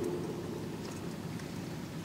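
Faint room tone of a reverberant church: the reader's voice dies away in the echo just after the start, then only a soft, even hiss.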